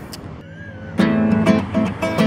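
Acoustic guitar strummed in chords, coming in sharply about a second in after a short quiet stretch.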